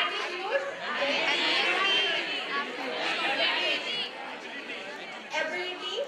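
Many audience voices calling out answers at once, overlapping into chatter in a large hall.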